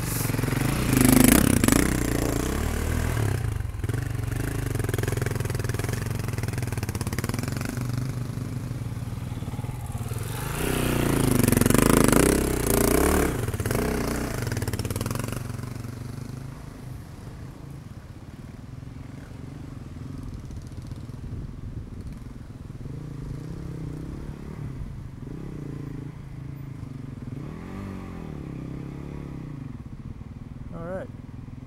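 Off-road dirt bike engines running on a trail: loud revving swells about a second in and again around 11 to 14 seconds, then a quieter steady idle for the second half, with a short rev near the end.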